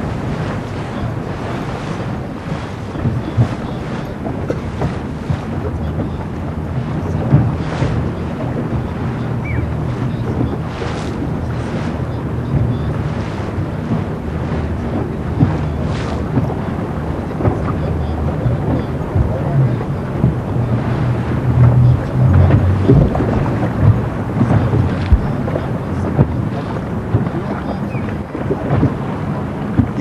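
Wind buffeting an open microphone over the water: a steady low rumble that swells and knocks unevenly with the gusts.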